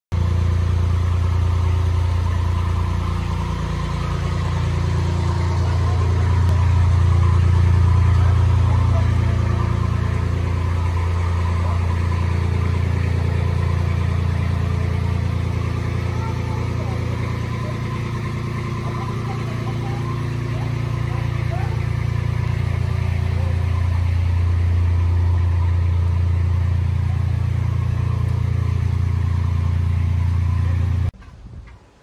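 1922 Buick D-45's overhead-valve six-cylinder engine idling steadily, a low hum that slowly swells and fades over several seconds.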